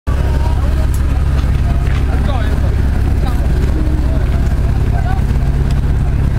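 Cruise ship tender lifeboat's engine idling alongside the pier, a steady low rumble, with people talking faintly over it.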